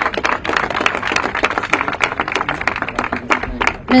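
Crowd applauding, many hands clapping.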